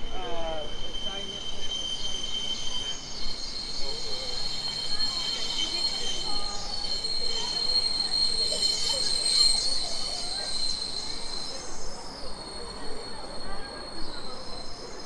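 Sustained high-pitched metallic squeal, like rail wheels grinding on a curve, jumping to a higher pitch about three seconds in and fading out near the end, over city street noise.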